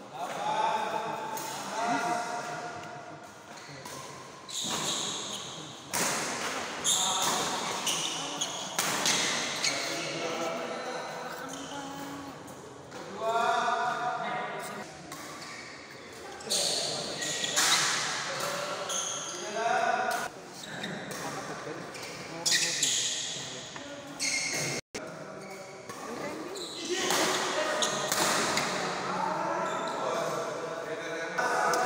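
Badminton play in a large indoor hall: repeated sharp racket-on-shuttlecock hits, echoing in the hall, with spectators' voices and shouts between them.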